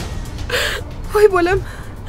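A woman's sharp gasping breath, then her high voice, over background music, with a dull low thud near the end as the car door shuts.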